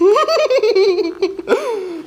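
A child giggling: a long, high-pitched run of laughter with a rapidly wavering pitch, broken off about a second and a half in by a second, shorter laugh that rises and falls.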